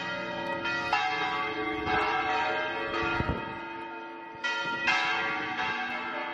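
Church bells ringing, struck about once a second, each strike a long ringing tone that overlaps the next.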